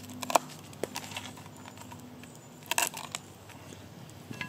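A cleaver cutting the stalks off dried chillies on a wooden board: a few sharp knocks and crisp crinkles of the dry chilli skins. The louder ones come near the start and a little before the end.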